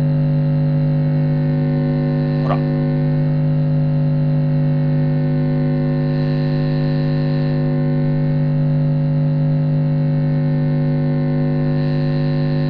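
An electric bass note held steadily at an even level through the HUMPBACK engineering 2x2 bass preamp, rich in overtones. Its upper overtones swell for a moment about six seconds in as the newly fitted mid-frequency pot is turned, showing the mid control working. There is a brief click about two and a half seconds in.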